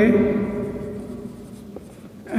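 Marker pen writing on a whiteboard, faint strokes with a small tap near the end.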